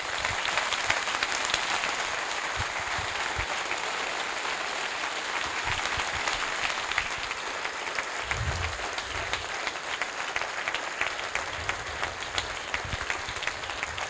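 Large audience applauding, dense steady clapping from many hands.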